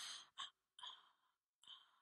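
Quiet, breathy sighs and exhalations, one after another: a loud one at the start, then three short ones with silence between.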